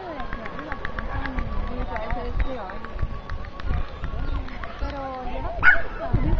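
Voices calling out to a small dog running an agility course, with a brief, loud, high call near the end.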